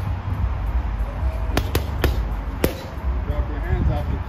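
Boxing gloves striking a heavy bag four times in quick succession, a jab-cross-hook-body-hook combination: two fast blows about a second and a half in, then two more within the next second.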